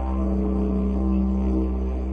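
Didgeridoo playing a steady low drone, its upper overtones shifting in colour as it goes.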